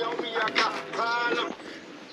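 Mobile phone ringing with a ringtone of steady pitched notes, an incoming call about to be answered.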